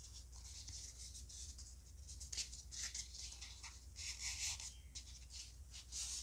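Faint rustling of a warmed EVA foam petal being bent and rubbed between the hands, in a few short soft swishes, clearest about two and a half and four seconds in, over a low steady hum.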